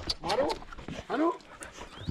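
A dog whining and yelping excitedly, two short cries that rise and fall in pitch.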